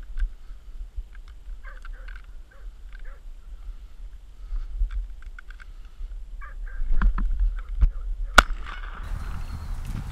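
Birds calling in short bursts at intervals over a steady low wind rumble on the microphone. A single sharp crack, the loudest sound, comes a little past eight seconds in.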